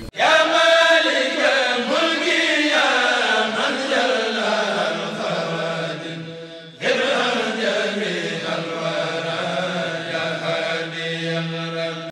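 Outro jingle with drawn-out chanted vocal notes that slide slowly downward, in two long phrases; the second starts suddenly about seven seconds in.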